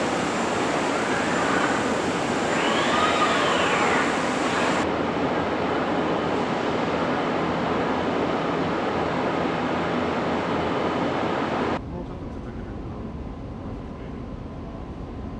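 Car paint-shop machinery noise: a steady hissing roar, with a whine that rises and falls in the first few seconds. The level drops sharply shortly before the end.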